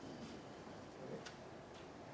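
Quiet room tone in a hall during a pause in a talk, with a few faint clicks, the clearest a little past a second in.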